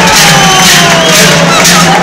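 Large cowbells (joareak) on the backs of a troupe of joaldun dancers clanging together in time with their steps, a loud, even beat of about two and a half clangs a second, with crowd voices underneath.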